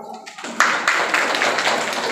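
An audience applauding. The clapping breaks out suddenly about half a second in and goes on steadily, with voices mixed in.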